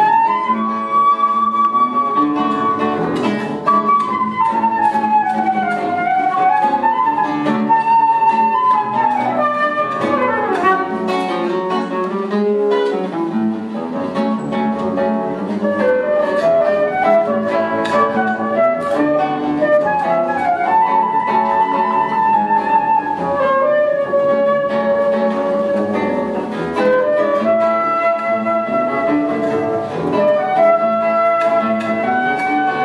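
Live flute, classical guitar and double bass trio playing. The flute carries the melody in held and gliding notes over plucked guitar chords and a bass line.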